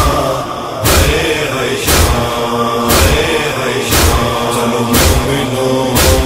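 Male voices chanting a sustained chorus over a heavy, regular beat about once a second: the matam chest-beating rhythm of a noha.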